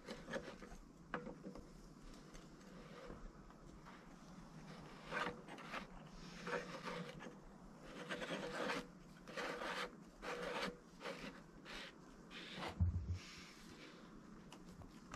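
Faint, irregular rubbing and scraping as a red lay-flat discharge hose and plastic pump fittings are handled and fitted on a sump basin, with a soft low thump near the end.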